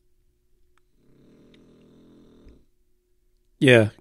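A pet snoring faintly: one low breath, about a second in, lasting about a second and a half.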